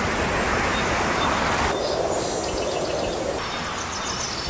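Steady rushing noise of wind through aspen trees, with faint bird chirps in the second half.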